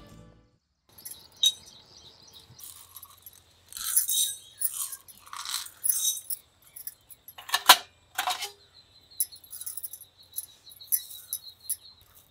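Whole black peppercorns poured into an empty pan for dry-roasting, rattling in several short bursts, with a few sharp metallic clinks of brass spice containers. A faint, thin pulsing chirp like an insect runs through the last few seconds.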